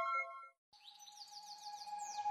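The last notes of background music die away, followed by a brief silence. Then comes a faint, quick run of high bird-like chirps over one held tone, slowly growing louder.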